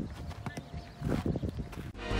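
Soccer ball tapped and juggled off a player's foot: a run of dull, uneven knocks, bunched in the second half.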